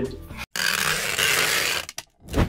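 A man laughing and saying "see you" is cut off. After a moment of dead silence, a steady hiss-like whoosh from the outro's sound effect runs for about a second and a half, then stops.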